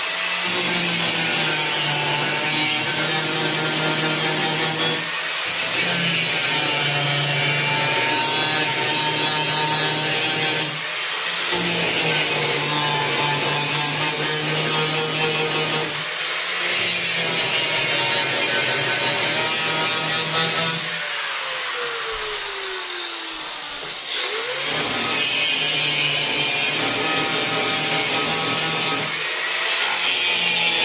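Angle grinder grinding down solid buck rivets, running in stretches of about five seconds with short breaks as it moves from rivet to rivet. About two-thirds of the way through it is switched off and its whine falls as it winds down; a couple of seconds later it is started again and spins back up.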